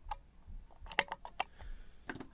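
Light, sharp clicks of small metal lock-picking tools against the lock cylinder: one near the start, then a quick run of about five about a second in.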